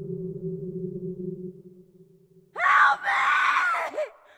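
A low, steady drone of held tones fades out, then about two and a half seconds in a person screams loudly, the pitch arching up and down over two cries broken by a short gasp, with a brief third cry near the end.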